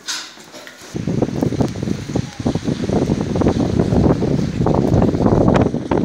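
Wind buffeting a phone microphone: a loud, uneven rumble that sets in about a second in and gusts on and off.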